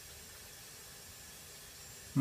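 Faint steady hiss of a gas burner under an enamelware canning pot full of beets.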